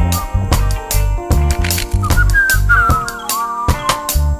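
Roots reggae band playing an instrumental intro: a heavy, repeating bass line under steady drum hits. About halfway through, a high lead melody enters, sliding and bending in pitch.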